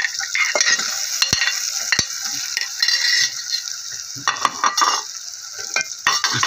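Spiced onion-tomato masala sizzling in hot oil in a pot while a steel ladle stirs it, with a few sharp clinks of the ladle against the pot, two of them clear about a second and two seconds in.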